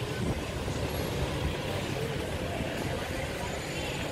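Steady street traffic noise from a busy seafront road, with faint voices of passers-by.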